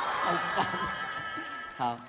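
Voices talking over a held, steady musical note that stops abruptly just before the end.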